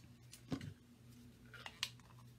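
Quiet handling of craft supplies on a tabletop: one soft knock about half a second in and a couple of light clicks near the end, over a faint steady hum.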